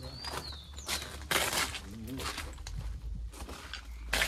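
Footsteps crunching on gravel, with a short whistled bird call right at the start and a louder crunch about a second and a half in.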